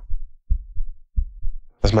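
About four soft, low thumps in just over a second, in a short pause between a man's spoken phrases, with his voice coming back near the end.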